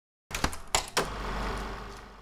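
Editing sound effect for a title-card transition: four sharp clicks within under a second, then a low rumble that fades away.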